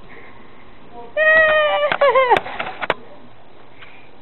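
A toddler's high-pitched squeal, held for about a second and then bending down in pitch, followed by a few sharp taps.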